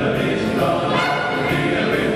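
Jazz big band playing, its saxophone and brass sections sounding together in full, sustained chords.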